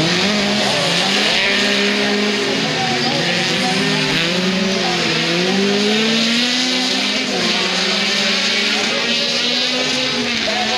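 Several autocross race cars running on a dirt track, their engines revving up and down as they accelerate and lift off, with more than one engine heard at once.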